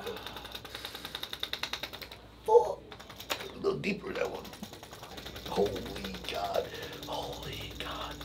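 A chiropractor's corded electric percussion instrument (a "thumper") tapping rapidly on the forearm and wrist, about ten taps a second, for the first two seconds. The patient then grunts and groans several times as the treatment on his sore wrist hurts.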